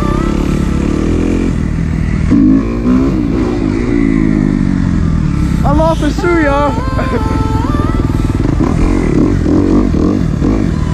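Kawasaki four-stroke single-cylinder dirt bike engine running under throttle as it is ridden, its revs rising and falling, most clearly a couple of seconds in.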